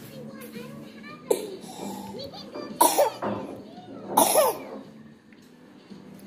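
People's voices in the room, with three loud, short vocal outbursts about a second in, around three seconds and just past four seconds.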